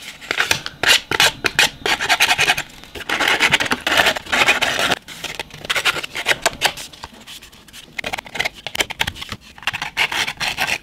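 Utility knife blade scraping along the edge of green card stock in runs of quick, rasping strokes, fraying the edge; the strokes go lighter for a couple of seconds late on.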